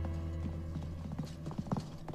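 Footsteps of several people walking on a polished wooden floor: irregular hard steps, several a second, with one louder step near the end. A low held music note fades out in the first moments.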